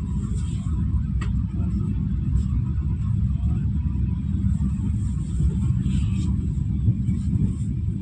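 Steady low rumble of a moving passenger train, heard from inside the coach, with a faint click about a second in.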